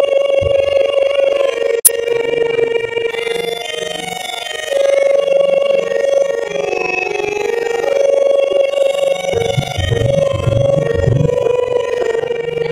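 Harmonium holding sustained reed notes that shift from one chord to the next. There is a sharp click about two seconds in, and low irregular thuds toward the end.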